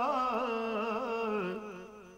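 A man singing a long held note of a Sufi kalam refrain, ornamented with small wavering turns and sinking in pitch. It fades away about a second and a half in.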